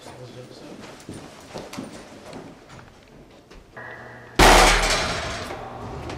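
Faint scattered knocks and shuffling, then a heavy door bangs loudly about four and a half seconds in, the sound ringing on and fading over a second or so.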